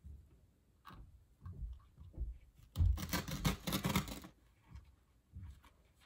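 Handling noise of crafting: soft knocks and rustling, then about a second of scratchy scraping in the middle, as wooden dowels are pushed into a styrofoam piece inside a gnome shoe.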